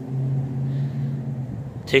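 A low, steady hum on one unchanging pitch that fades out about one and a half seconds in.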